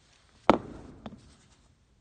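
A single sharp knock about half a second in, trailing off over about a second, then a lighter tap: a smartphone being set down and handled on a wooden surface.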